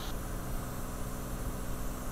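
Steady cockpit drone of a Cirrus SR20's six-cylinder Continental engine and propeller at cruise power, about 2470 rpm, mixed with a hiss of airflow, heard from inside the cabin.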